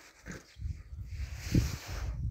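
A collie-type dog gives one short, rising whine about one and a half seconds in, over a low rumble on the microphone.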